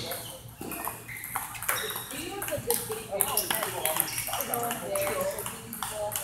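Table tennis balls clicking irregularly off tables and paddles, a scatter of sharp ticks from rallies around the hall.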